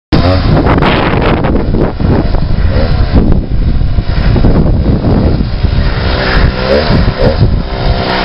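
Small gasoline engine of a large home-built RC car running loudly, revved up and down several times.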